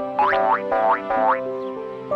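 Cartoon background music with a quick run of about six short rising pitch-slide sound effects, roughly four a second, over the first second and a half; the music holds its notes after that.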